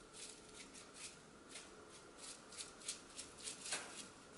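Plastic bottle of dried red chili flakes shaken over a plate: a quick, irregular series of short, dry rattles, the strongest near the end.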